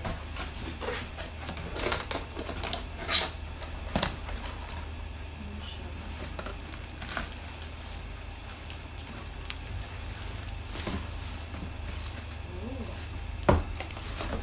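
Cardboard box being opened and a plastic-wrapped foot bath pulled out of it: cardboard flaps scraping and plastic rustling, with scattered sharp knocks, the loudest near the end. A steady low hum runs underneath.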